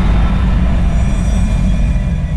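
Logo-intro sound effect: a loud, deep bass rumble ringing on from a cinematic hit and slowly fading, with faint high shimmering tones above it.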